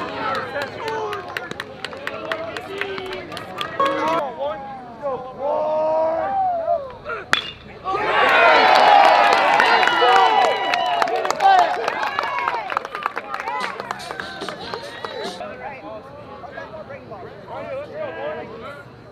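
Voices of players and spectators shouting and chattering at a baseball game. About seven seconds in comes one sharp crack of a metal bat hitting the ball, and then the crowd yells and cheers loudly for a few seconds before it dies down.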